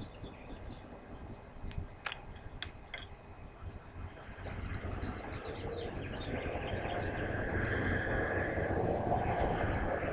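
A few small sharp clicks as a glass hot-sauce bottle's cap and plastic neck insert are worked open by hand. Then a broad outdoor background noise swells steadily through the second half, growing louder to the end.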